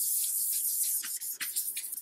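Folded paper towel wiping back and forth over a paperback's glossy cover, a steady hissing rub, as excess adhesive remover is wiped off. The rubbing breaks briefly about a second in and fades near the end.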